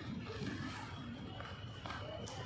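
Railway station platform background: faint distant voices over a low steady hum, with a thin high steady tone coming in near the end.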